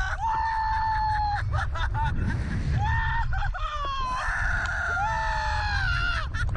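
Two men screaming on a Slingshot reverse-bungee ride: a series of long held yells that sag in pitch at their ends, the two voices overlapping in the second half. Wind rumbles on the ride-mounted microphone underneath.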